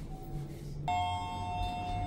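Lift arrival chime: a single electronic ding sounds about a second in and rings on steadily for more than a second as the car reaches its floor.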